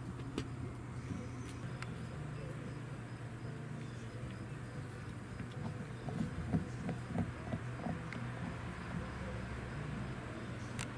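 Steady low background hum, like distant traffic, with a cluster of faint taps and clicks from about six to eight seconds in.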